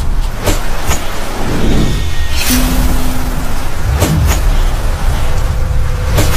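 Loud cinematic sound-effects track for a sword fight in rain: a steady deep rumble and noisy rush broken by several sharp hits, with a low tone held for about a second in the middle.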